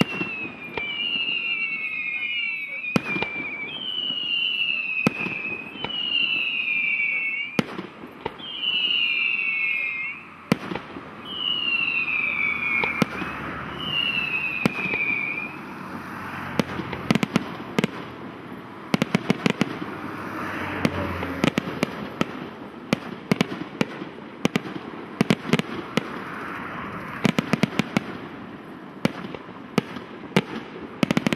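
Aerial fireworks display. For about the first fifteen seconds, whistling fireworks sound one after another, about seven whistles each falling in pitch over about a second, with sharp bangs between them. From about halfway, a dense, rapid barrage of bangs and crackling takes over.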